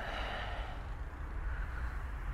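A person's long breathy exhale, like a sigh, fading over about a second, over the low steady rumble of a car's cabin while driving.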